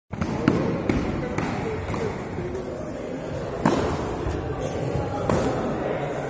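Padded foam sparring swords hitting padded shields and helmets: a run of about seven sharp thwacks, the loudest a little past halfway, with voices in the background.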